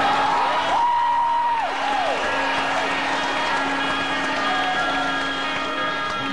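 Live concert audience applauding and cheering over a held instrumental chord, with a loud whistle about a second in that rises, holds and falls.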